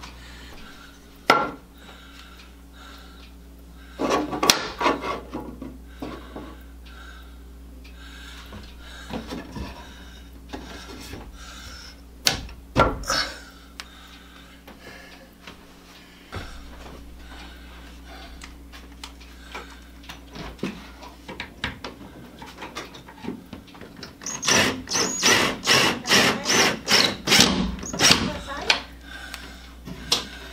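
Scattered knocks, clicks and rubbing from hands and tools handling a wooden wall-mounted quilt rack, with a quick run of sharp knocks lasting several seconds near the end.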